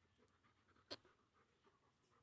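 Near silence, broken by one brief, faint dog sound about a second in.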